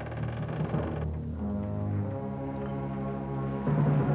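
Orchestral film score with held low brass chords that shift every second or two and swell louder near the end.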